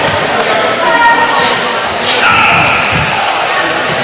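Many overlapping voices of a karate class practising in pairs, echoing in a large gym hall, with a sharp impact about two seconds in.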